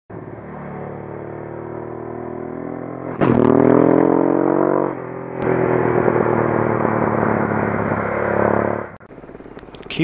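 Motorcycle engine running and getting louder, then revving up with a rising pitch about three seconds in. It eases off briefly around five seconds, pulls hard again, and cuts off abruptly about a second before the end.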